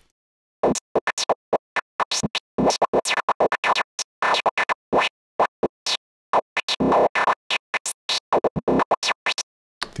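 Synthesized noise lead played in short gated notes of random lengths, an irregular stutter of bursts broken by silent gaps, its band-pass filter frequency swept by an LFO. It starts about half a second in and stops just before the end.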